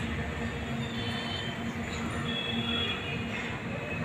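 Steady rumbling noise with a low hum, and faint high whines that come and go.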